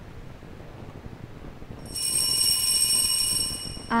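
A steady, high ringing tone made of several pitches starts about halfway through, holds level without fading, and cuts off near the end.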